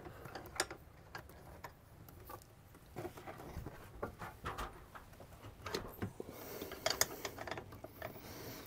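Faint, irregular clicks and ticks of a long mounting bolt being turned by hand to start its thread, with light knocks of the RV air conditioner's mounting panel against its frame. The clicks are a little louder and closer together about six to seven seconds in.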